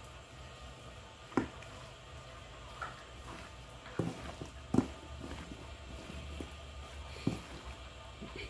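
A hand mixing dog kibble with raw egg and liver in a stainless steel bowl: soft wet squishing with about five sharp knocks of kibble and fingers against the steel, the loudest about five seconds in.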